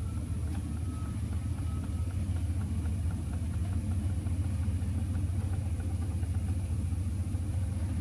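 A steady low hum, like an idling engine, with the electric recline actuator of a Quantum 614 power chair lowering the seat back; the actuator itself is very quiet, heard at most as faint light ticking.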